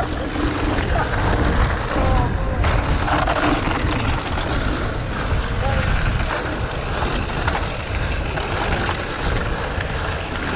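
Wind rushing over an action camera's microphone with the rumble of mountain bike tyres rolling fast over loose gravel and dirt, a steady noise throughout.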